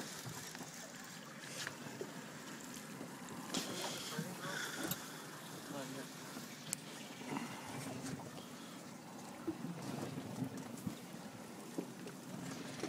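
Quiet ambience aboard a small boat at sea: wind on the microphone and water sloshing against the hull, with a few light knocks and faint voices in the background.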